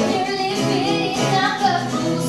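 A woman singing a melody over two acoustic guitars strumming chords.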